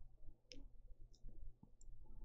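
A few faint, light clicks, three short high ticks spread through the two seconds, over a faint steady low hum.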